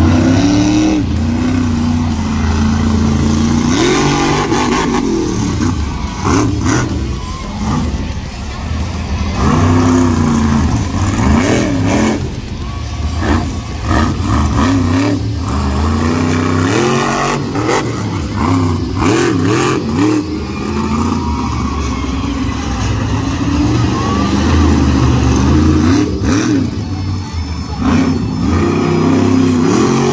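Monster truck engine revving hard again and again as the truck drives and jumps on a dirt arena, its pitch climbing and falling with each burst of throttle.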